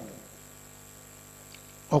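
Steady low electrical mains hum from the microphone and amplifier system, with a faint high steady whine above it. A man's voice trails off at the start and speech comes back right at the end.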